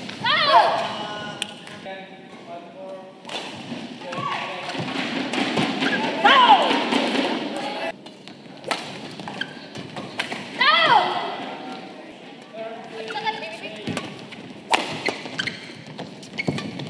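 Badminton players shouting: three loud calls, each falling in pitch, near the start, about six seconds in and about eleven seconds in. Between them come sharp shuttlecock strikes and thuds on the court, with quick rally hits near the end.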